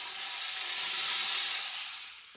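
A rushing, hissing sound effect standing in for the word 'watered': it swells up and then fades away over about three seconds.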